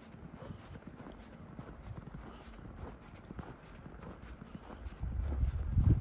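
Footsteps walking through snow, a run of short soft impacts, with a louder low rumble near the end.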